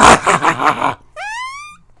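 A loud, rasping rude noise lasting about a second, made for a puppet's comic gag, followed by a short whistle that rises in pitch.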